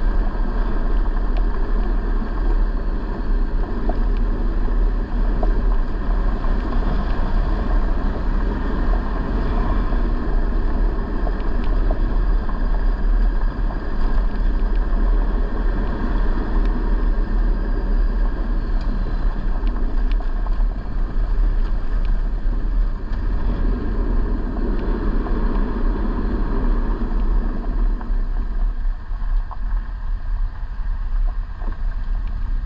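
Off-road vehicle driving on a dirt road: a steady, loud mix of engine, tyre and wind noise with deep rumble, and a few faint clicks.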